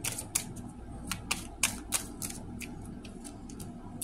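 A deck of large oracle cards being shuffled by hand: a run of soft, irregular clicks and slaps as the cards are pushed through one another, thinning out near the end.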